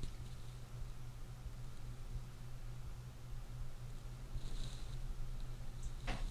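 Quiet room tone: a steady low hum with faint hiss, and a brief soft hiss about four and a half seconds in.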